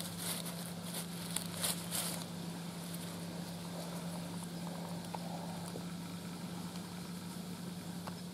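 Faint rustling and a few light clicks of dry leaf litter being handled while small mushrooms are cut with a folding knife, mostly in the first two seconds. A faint, steady low hum lies under it throughout.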